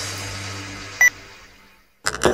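A single short, high electronic beep about a second in, a camera focus-confirm beep, over electronic dance music that fades out to silence.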